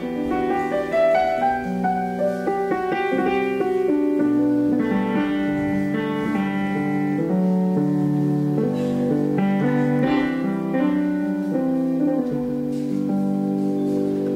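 A gentle Celtic-style tune in a pentatonic scale, played with a piano sound from an iPad music app, with overlapping sustained notes and chords.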